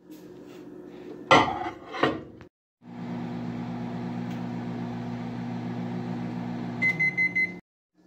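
Hamilton Beach microwave oven running with a steady hum, then beeping several times in quick succession near the end. Two sharp knocks come before it, in the first two seconds.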